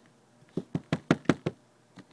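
A small plastic toy figurine tapped against a hard tabletop: about six quick knocks in a row, starting about half a second in, as it is hopped along.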